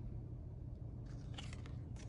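Tarot cards being handled: a few short, crisp flicks and slides of card stock as the top card is drawn off the deck, starting about halfway through, over a low steady hum.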